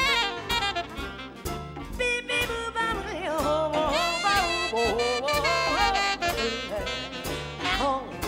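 Jazz combo playing live, with saxophone melody lines that bend and slide over a steady bass and drum beat.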